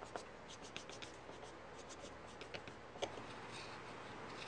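Chip carving knife blade being rubbed on a leather strop loaded with abrasive compound for final sharpening: faint, quick, scratchy strokes.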